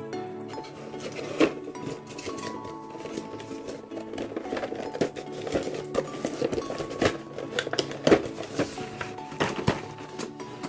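Background music playing under clicks, knocks and rustles of a cardboard toy box and its plastic packaging being handled and opened, with sharper knocks about a second and a half in and again near the end.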